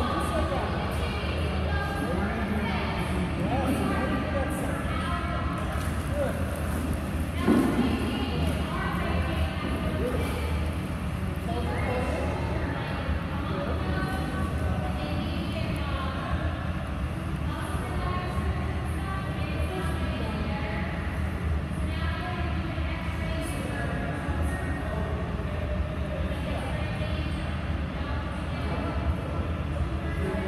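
Indoor pool hall ambience: indistinct, echoing voices of people talking over a steady low hum, with faint background music.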